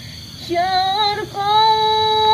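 A woman singing a slow, high melody alone, holding long wavering notes; after a brief pause the singing comes back in about half a second in.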